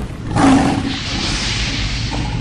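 A lion's roar sound effect that starts suddenly about a third of a second in, over a steady low rumble, then trails off into a hiss.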